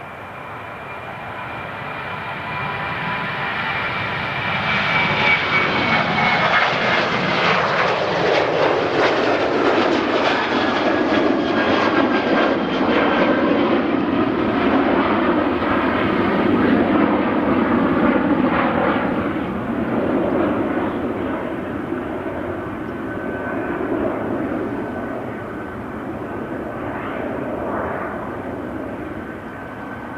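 Boeing 737-800's CFM56-7B turbofan engines at takeoff power as the airliner lifts off and climbs past. The jet noise builds over the first five seconds and stays loud for about fifteen seconds, with a high fan whine dropping slightly in pitch, then fades slowly as the aircraft climbs away.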